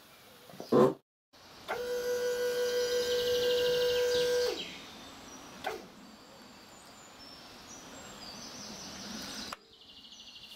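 Birds chirping over quiet background noise. Shortly after the start a loud steady tone with a high trill over it lasts about three seconds and falls away, followed by a single knock.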